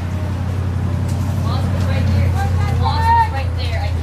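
Low, steady rumble of wind on the microphone, swelling a little in the middle, with faint distant voices calling across the field.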